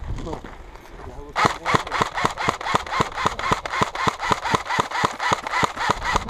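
A rapid, even series of sharp clicks, about four or five a second, starting about a second and a half in.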